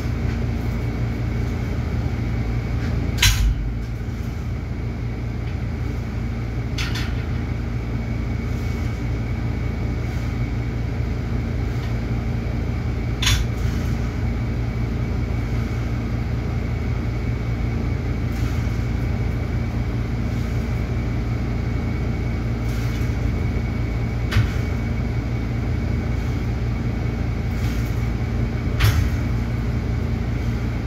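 A steady low hum of room ventilation runs throughout. About five short, sharp clanks from a cable weight machine being worked fall at irregular intervals, roughly 3, 7, 13, 24 and 29 seconds in.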